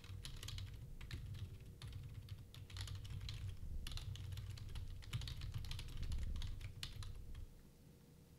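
Fast typing on a computer keyboard: a dense run of key clicks that stops shortly before the end.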